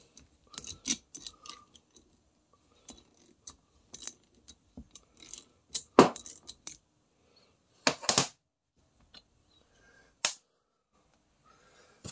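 Scattered metallic clicks and clinks of a socket and ratchet being worked on a brake caliper's bleeder screw and handled, with a sharp knock about six seconds in and a louder doubled clatter around eight seconds.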